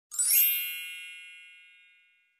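A bright, high-pitched chime sound effect struck once, ringing with many high tones and fading away over about two seconds.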